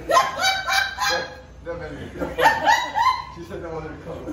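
Women laughing and squealing in high-pitched bursts: two runs of quick rising calls, each about a second long, the second starting about two seconds in.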